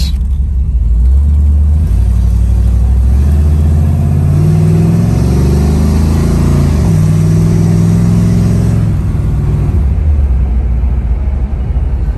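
1971 Chevrolet Chevelle's rebuilt 454 big-block V8, heard from inside the cabin while the car accelerates. The engine note climbs, drops as the Turbo Hydra-Matic 350 automatic upshifts about three and seven seconds in, and eases off near the end.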